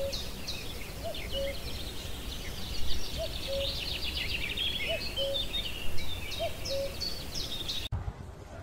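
Birds chirping and calling in a forest chorus, a rapid high chatter with a low two-note call repeating about every one and a half seconds. The sound cuts off abruptly near the end.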